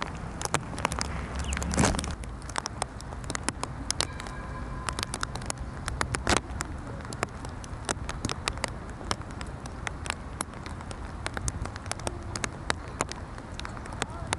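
Light rain pattering: many irregular, sharp drop ticks over a steady soft hiss.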